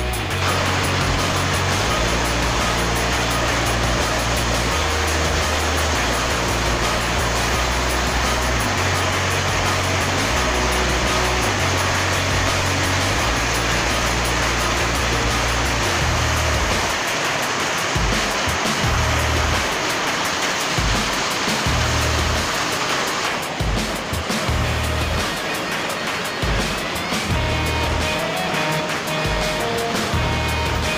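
Music with a stepping bass line over a dense, steady rushing of heavy rain. About two-thirds of the way through, the rain noise thins out and the music comes through more clearly.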